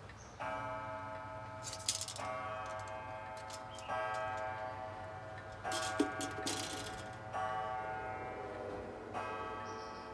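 Old Meiji pendulum wall clock striking the hour on its coil gong: six deep, ringing strokes about 1.7 seconds apart, each left to fade. A few sharp clicks come around 2 and 6 seconds in.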